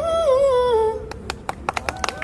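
The final sung note of the backing track, one unaccompanied voice held and sliding down in pitch, fading out about a second in. Then a few scattered sharp claps.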